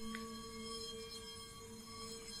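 Faint ambient background music: a sustained drone holding two steady notes, fading slightly.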